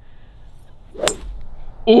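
A golf club striking a golf ball: one sharp crack about a second in.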